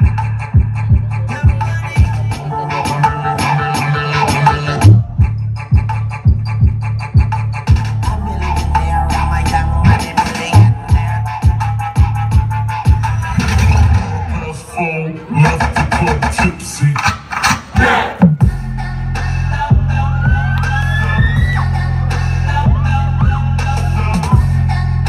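Hip hop dance-routine mix played loud over a PA: a choppy stretch of beats and sharp cut-in effects, changing about 18 seconds in to a steady heavy bass with a rising sweep over it.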